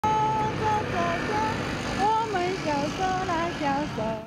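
A woman singing a children's song in held notes that step up and down, with steady traffic noise behind.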